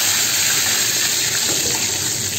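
Breaded chicken patties frying in hot oil in a pan: a steady sizzling hiss.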